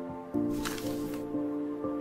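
Logo-intro music: held notes that step in pitch every half second or so, with a whoosh sound effect about half a second in.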